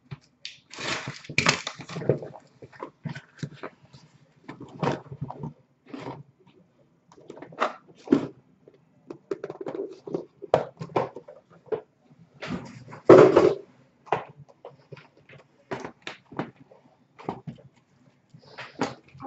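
A cardboard case of sealed hockey card boxes being handled and opened: irregular scrapes, rustles and knocks of cardboard, with one louder scrape about 13 seconds in.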